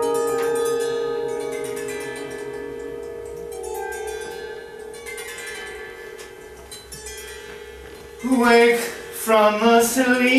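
Piano and harp chords ringing and slowly dying away, with a few lighter plucked notes. About eight seconds in, a voice begins singing over them.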